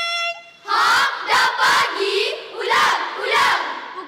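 A group of schoolchildren chanting loudly together in short, energetic phrases, coming in just under a second in as a held instrumental note dies away.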